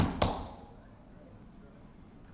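Two sharp knocks in quick succession at the start, a hand striking a wooden pulpit, then a quiet room tone.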